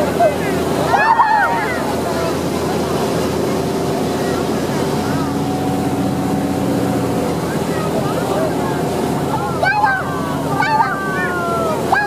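A motorboat's engine running steadily under the rush of its churning wake water. Voices are heard briefly about a second in and again near the end.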